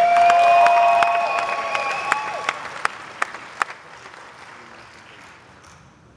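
Audience applauding, with one voice giving a long held whoop over the first couple of seconds; the clapping thins out and fades away by about five seconds in.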